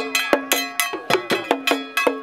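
An iron bell struck in a fast, even rhythm, about six strokes a second, each stroke ringing briefly.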